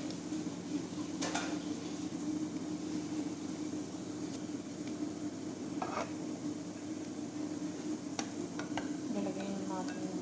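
Chopped onions sizzling as they sauté in a nonstick pot, with a wooden spoon stirring and knocking against the pot a few times, and several clinks near the end. A steady low hum runs underneath.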